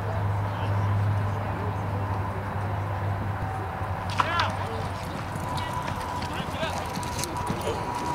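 Tie-down roping run in a rodeo arena: crowd voices over a low hum that fades about three seconds in, then a sharp bang and a brief high call at about four seconds as the calf breaks out. Horse hooves on the arena dirt follow as the roper chases the calf.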